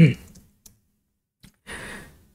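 The tail of a man's voice, then near silence broken by two faint keyboard clicks. A breathy sigh or exhale comes near the end.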